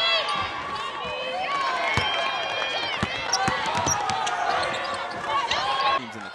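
Basketball game sounds on a hardwood court: sneakers squeaking, with a basketball bouncing twice about two and three seconds in.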